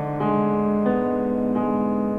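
Piano, left hand playing a broken G-sharp diminished chord (root, fifth, octave, third...) one note at a time, with a new note about every two-thirds of a second and the earlier notes ringing on underneath.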